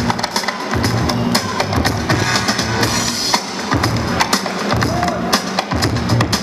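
Break music with a steady drum beat and a repeating bass line, played by a DJ through PA speakers.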